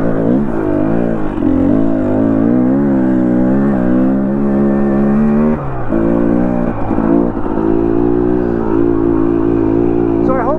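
Dirt bike engine running under load on the trail, its note wavering with the throttle and climbing steadily, then dropping sharply a little past halfway as the throttle is rolled off. It picks up again and holds steady near the end.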